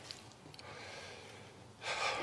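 Quiet pause with faint room noise, then near the end a sudden, sharp intake of breath by a man close to a lectern microphone.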